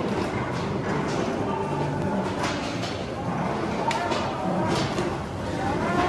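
Footsteps knocking on the walkway of a vortex tunnel over a steady din, with faint voices in the background.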